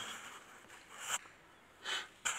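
A person breathing close to the microphone: two short, noisy puffs of breath, one about a second in and one near the end.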